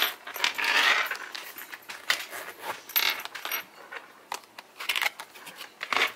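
A zip-around wallet being handled and rummaged through: small metal jingles and clicks in several short bursts, around the first second, about three seconds in and about five seconds in.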